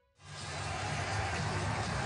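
Crowd noise in a basketball arena, a steady hubbub of many voices, fading in quickly after a brief silence at the start.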